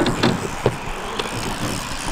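Small wheels of a mini BMX rolling over smooth skatepark concrete, a steady rolling hiss with a few light clicks and knocks from the bike.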